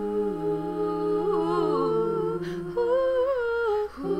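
One woman's voice, multitracked into several parts, humming in close harmony: low parts hold long steady notes while a higher part wavers and glides above them. The chord breaks off briefly near the end.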